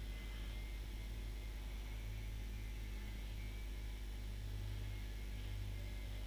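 Steady low electrical hum with a faint hiss, the background noise of an open microphone.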